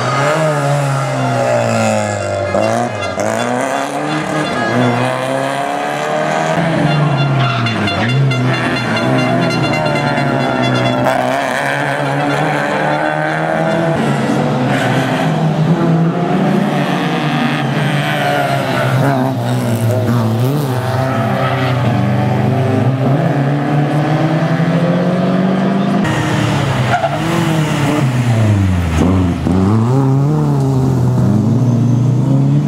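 Rally car engines revving hard as the cars pass one after another, the pitch climbing through each gear and dropping at each change and as each car goes by.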